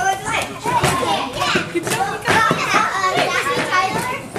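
Children's and adults' voices talking and calling out over one another, the chatter of children at play.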